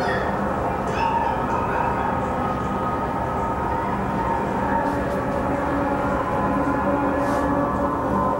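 Soundtrack of a projected video artwork playing over the hall's speakers: a steady low drone with several held tones.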